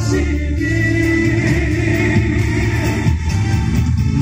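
Male singer performing a Taiwanese Hokkien ballad live into a handheld microphone over amplified backing music, holding one long note through the middle.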